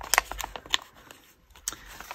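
Paper handling: a small paper card rubbed and pushed against a journal page and paper pocket, giving a few short rustles and taps in the first second and one more tap near the end.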